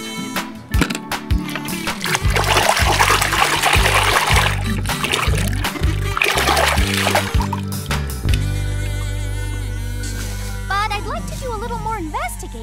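Water splashing and sloshing as a toy car is swished by hand through a tub of soapy water, in two spells in the first part, over background music.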